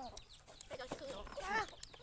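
Chickens clucking, with two short calls less than a second apart.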